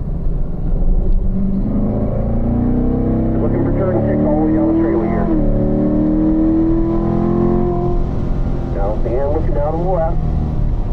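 Corvette V8 under hard acceleration, heard from inside the cabin. Its revs rise steadily in third gear, drop with a quick upshift to fourth about five seconds in, then climb again.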